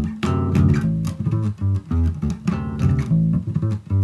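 Electric bass guitar played fingerstyle: a riff of quick plucked notes, including three-finger triplets, with chords strummed down and back up across the A, D and G strings.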